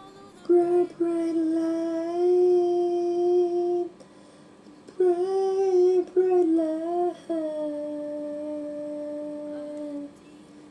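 A single voice singing long held notes in a melody, broken by a few short pauses, with no clear accompaniment.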